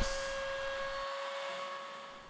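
A CNC Shark's router running steadily with a whine over a hiss as its bit mills a locating pocket in a scrap board. The sound fades gradually toward the end.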